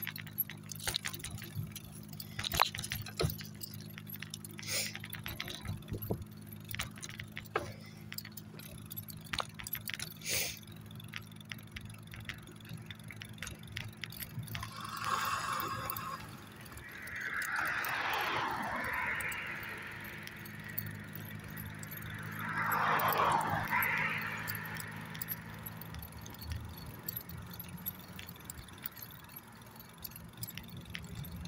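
Light metallic jingling and clicking from the dog's leash and collar hardware over a steady low hum. Vehicles pass on the road alongside, two or three swelling whooshes in the second half, the loudest about three quarters of the way through.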